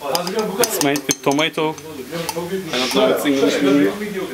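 Metal spoon scraping and clinking against a glass jar while scooping out thick salça paste, with a few sharp clinks in the first second or so. A man talks over it.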